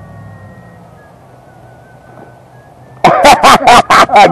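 Faint, thin whine of the E-flite F4U-4 Corsair model's electric motor, drifting slowly down in pitch as it runs at low throttle after the model has landed in the grass. About three seconds in, a person laughs loudly.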